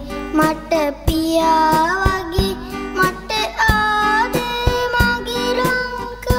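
A boy singing a Sinhala song, held notes gliding between pitches, backed by guitar and a steady drum beat.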